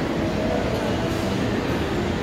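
Steady background din of a busy indoor shopping mall, a continuous low rumble without distinct events.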